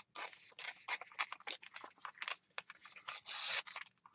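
Gel-printed paper torn by hand in a series of short rips, with a longer, louder tear a little past three seconds in.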